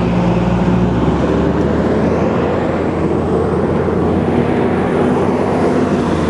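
Steady road traffic noise, with the low hum of vehicle engines drifting slowly in pitch.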